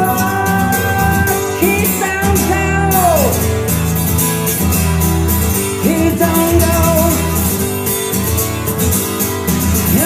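A song with a singer and band playing through Magnepan 1.7i planar-magnetic speakers driven through a home-built first-order crossover, picked up in the room by a Blue Yeti USB microphone. The vocal line slides down about three seconds in and comes back in about six seconds in.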